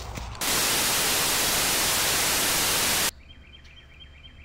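Loud, even TV static hiss that starts about half a second in and cuts off suddenly about three seconds in: a live broadcast feed going dead.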